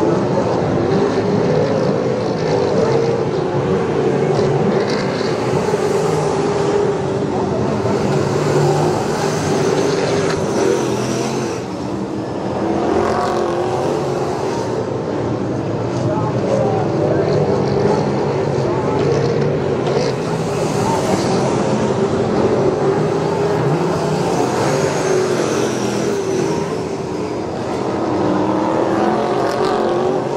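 V8 dirt-track race sedans running laps together, several engines rising and falling in pitch as the cars accelerate and lift around the oval. The sound drops in loudness briefly about twelve seconds in and again near the end.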